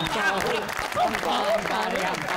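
Studio audience applauding, the clapping mixed with voices.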